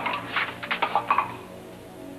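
A man's voice briefly in the first second or so, then soft background music.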